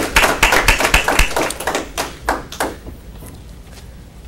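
A small group applauding by hand, the clapping thinning out and stopping about two and a half seconds in.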